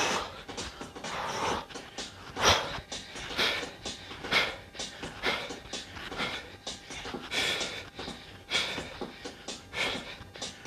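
A man breathing hard from exertion close to a headset microphone, with sharp, noisy exhalations about once a second.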